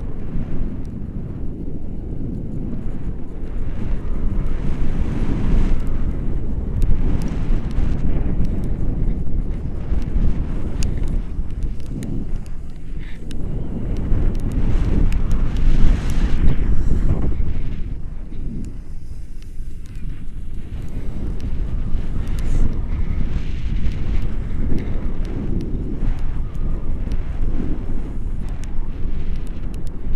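Wind buffeting the microphone of a camera on a tandem paraglider in flight: a steady low rumble that swells and eases with the airflow, loudest about halfway through.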